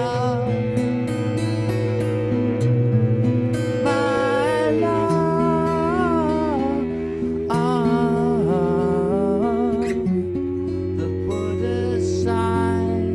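Instrumental passage of a folk-rock song: acoustic guitar chords and cello under a musical saw. A held, wavering note steps down twice, with gliding higher notes over it.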